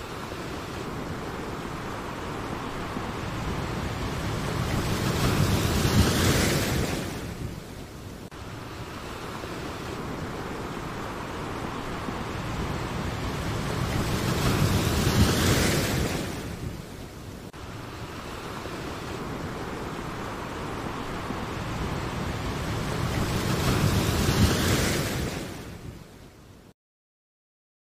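Whooshing sound effect for an animated end-screen graphic: three rushes of noise, each swelling over several seconds and then falling away, about nine seconds apart, as if looped.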